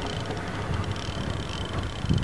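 Steady low rumble of wind on the microphone and the boat at sea, with a faint thin high tone through the middle.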